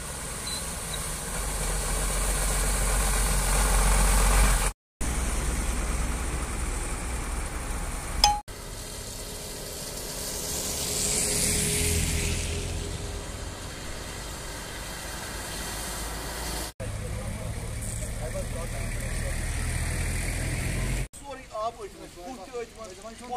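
Truck and car engines running as the vehicles drive through shallow floodwater over a road, with water splashing under the tyres. The engine noise swells as each vehicle comes near, and the sound breaks off abruptly several times.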